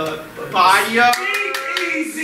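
A voice speaking loudly on a stage, its pitch rising at the start, with a few sharp handclaps about a second in.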